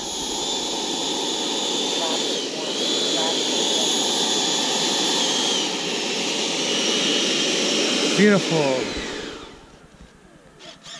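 Twin 80 mm electric ducted fans of a Freewing MiG-29 RC jet running at taxi throttle: a steady whine over rushing air, its pitch dipping briefly twice. About nine seconds in the fans spool down and stop as the jet comes to rest.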